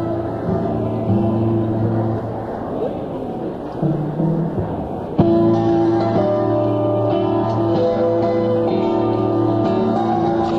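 Live band opening a song: held notes ring out for the first few seconds, then the full band comes in with a sharp, loud attack about five seconds in and plays on.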